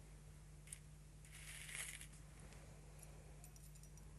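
Quiet handling of thin glass stringers on a work surface: a small click, then a soft brushing rustle and a few faint light ticks, over a low steady hum.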